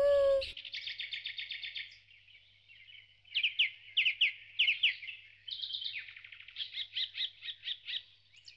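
Background music ends about half a second in, giving way to birds chirping in a forest: a rapid trill, then a run of short downward-sweeping chirps, then more trills and chirps.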